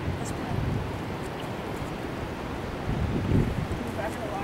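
Wind buffeting the microphone in gusty low rumbles, over a steady hiss of moving river water.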